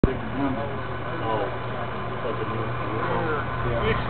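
Indistinct voices talking over a steady low hum, with a sharp click at the very start.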